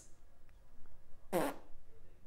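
A brief wordless vocal sound from a person, about a second and a half in, against quiet room tone with a couple of faint clicks.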